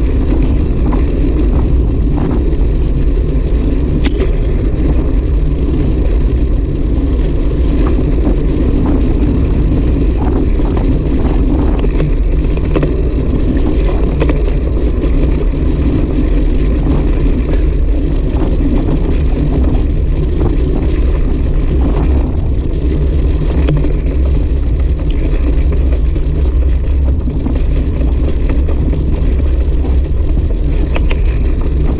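Steady wind rush on a bicycle-mounted camera's microphone at riding speed, mixed with the rolling of road-bike tyres on rough asphalt.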